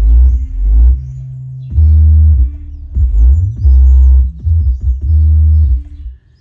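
Bass-heavy music playing loud through a car audio system with an Accender compact active subwoofer in the trunk, its long deep bass notes dominating. The music stops abruptly just before the end.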